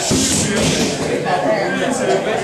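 Indistinct chatter of several people talking at once in a large, echoing room.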